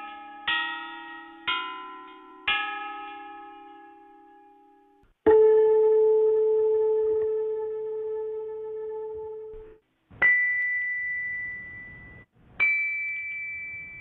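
Bronze chime bells of the Marquis Yi of Zeng (bianzhong) being struck one note at a time. First a run of notes about a second apart, then a loud, lower bell that rings for about four seconds, then two higher notes, each dying away slowly.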